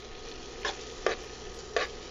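Metal spoon stirring barley toasting in melted butter in a stainless steel pot, the spoon striking the pot in three short clicks over a faint steady background.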